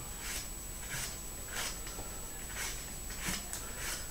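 Vegetable peeler scraping the thick skin off a cucumber in a series of faint strokes, about one a second.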